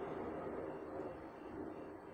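A pause in speech with only faint, steady background noise: an even low hiss with no distinct event in it.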